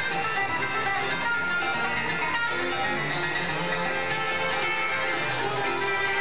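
Live bluegrass band playing an instrumental passage: flatpicked steel-string acoustic guitars over upright bass, with mandolin and fiddle in the band.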